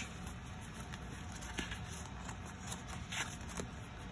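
Faint rustling of sheets of 6-by-6 craft paper being leafed through by hand, with a few light ticks as the sheets slide and tap against each other.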